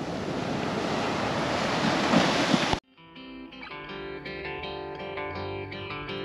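Ocean surf on the shore as a steady rushing noise, cut off suddenly about three seconds in; soft plucked-guitar background music then begins.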